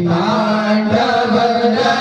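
Male voices chanting Sanskrit Shiva mantras of the Rudrabhishek through microphones, in drawn-out held notes.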